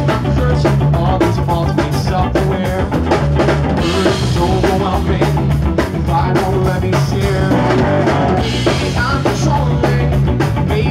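Live rock band playing: drum kit keeping a steady beat under electric guitars and keyboards.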